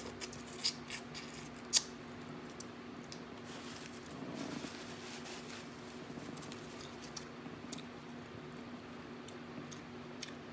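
Wet mouth clicks and smacks from eating crawfish and sucking seasoning off the fingers, a few sharp ones in the first two seconds, the loudest near two seconds in. After that come sparse faint clicks over a steady low hum.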